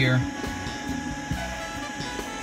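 A steady machine hum like a fan running, with faint steady whining tones above it.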